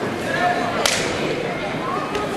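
Body percussion from a step routine: one sharp smack about a second in, over the voices and din of a gym crowd.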